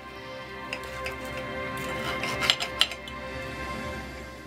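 A knife and fork clinking and scraping on a dinner plate while turkey is cut, with a few sharp clinks, the loudest two close together about two and a half seconds in. Music plays steadily in the background.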